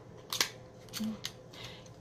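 A single sharp click about half a second in as a small eyeshadow pack is handled, then a brief hummed "mm".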